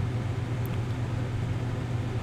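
Steady low electrical-sounding hum with an even hiss over it: the background noise of the recording setup, with one faint click about two-thirds of a second in.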